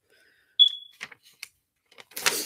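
A single short, high-pitched electronic beep about half a second in that fades quickly, followed by a few faint clicks.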